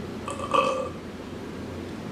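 A man's short throaty vocal sound, about half a second in, over a faint steady room hum.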